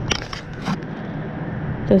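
A few short clicks and rustles in the first second as a zippered accessory case of plastic-bagged camera mounts is handled, over a steady background hiss.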